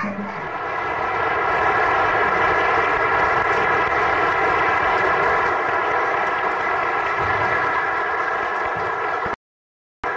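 A steady droning hum with several fixed tones over a hiss, cutting off abruptly about nine seconds in.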